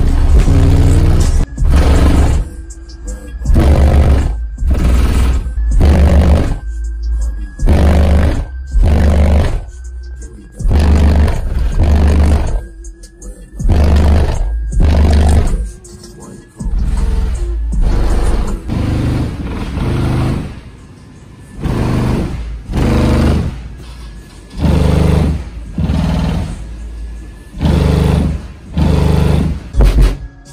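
Bass-heavy music played very loud through two Sundown X-series 18-inch subwoofers on a 16,000-watt amplifier, heard from inside the vehicle's cabin: deep bass hits come about once a second. Under the music runs a faint high whine that slowly wavers in pitch, which the owner blames on RCA cables running alongside the power wiring.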